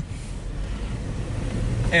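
Steady low rumble of a car heard from inside the cabin while it drives.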